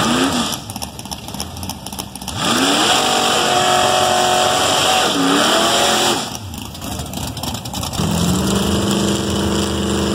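1979 Chevrolet Malibu drag car doing a burnout: a quick rev at the start, then the engine held at high revs for about four seconds with the rear tires spinning and hissing, the revs dipping and climbing once before it backs off. Near the end the engine settles into a steady low run as the car rolls away toward the line.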